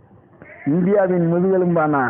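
A man's voice holding one long drawn-out vowel for over a second, starting about two-thirds of a second in.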